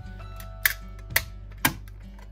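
Three sharp clicks about half a second apart as craft supplies, a metal watercolour tin and a plastic ink pad case, are handled on a desk, over soft background music with held notes.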